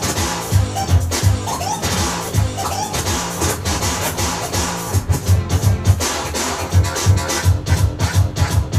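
A DJ scratching vinyl on a turntable over a drum beat, the scratches heard as short pitch sweeps in the first few seconds. From about five seconds in, the drum hits come in a quicker run.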